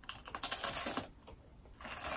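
A man clearing his throat into his fist, a rough, crackly rasp of about a second, then a shorter one near the end.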